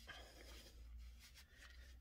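Near silence: faint soft rustles and ticks of a small fabric toy and its polyester stuffing being squeezed in the hands, over a low steady hum.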